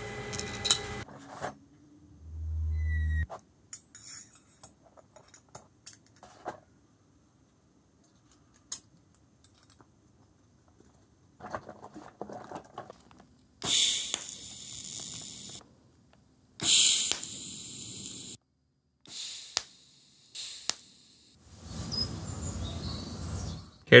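Small stainless-steel parts being handled and fitted together by hand, with scattered light metallic clicks and a brief low hum. In the second half come stretches of room ambience with faint birds chirping outside.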